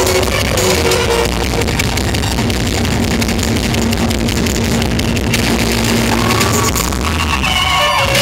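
A Roma band playing live, amplified: clarinet lead over electric guitar, drum kit and keyboard, with a long held low note through the middle and a clarinet line coming back in near the end.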